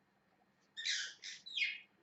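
Pet parrot chirping: three short, high calls in quick succession, starting a little before the middle, the last one sliding down in pitch.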